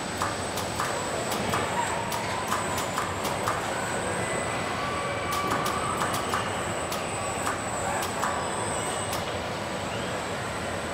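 Car body welding-line machinery running: a steady mechanical din with a thin, constant high whine, short rising-and-falling whines and frequent sharp clicks and clacks as robots and clamping fixtures move and close on the steel parts.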